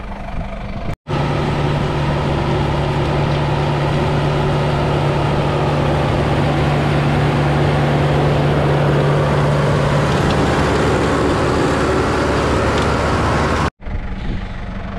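New Holland TL100 tractor's diesel engine running loud and steady up close, pulling a Bush Hog rototiller through the soil. A low hum in the engine note fades out about ten seconds in, and the sound drops out briefly about a second in and again near the end.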